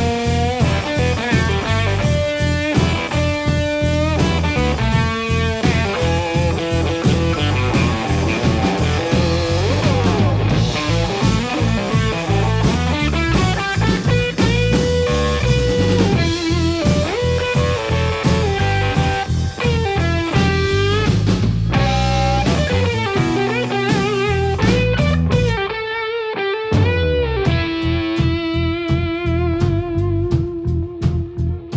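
Blues-rock instrumental break: a red ES-339 P90 Pro semi-hollow electric guitar with P-90 pickups plays a single-note lead, with bent notes and vibrato, over bass guitar and drums. Near the end the bass and drums drop away for about a second, and then a long note is held.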